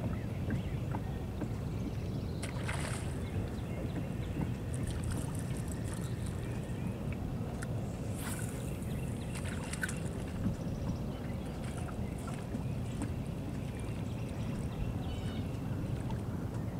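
Steady low rumble on the deck of a bass boat out on the water, with brief high swishes from a spinning rod being cast, once about three seconds in and again about eight seconds in.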